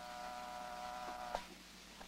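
Steady electrical buzz of an X-ray machine making an exposure, as a radio-drama sound effect, cutting off with a click about a second and a half in.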